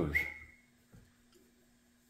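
The tail of a man's spoken word, trailed by a short thin whistle-like tone. Then a pause with a faint steady hum and one soft click about a second in.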